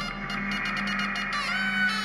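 Experimental live music: a white end-blown wind instrument played in clusters of short, wavering notes with gliding pitch, over a low held tone that fades out near the end.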